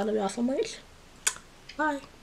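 A woman talking, with a pause in which a single sharp click sounds about a second in, then her voice resumes briefly near the end.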